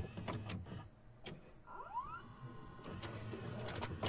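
Videocassette recorder mechanism loading and starting to play a tape: a series of sharp clicks and a faint motor whir, with a short rising whine about two seconds in.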